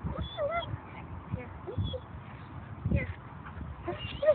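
A dog whining in a few short, high, wavering notes, with low dull thumps in between.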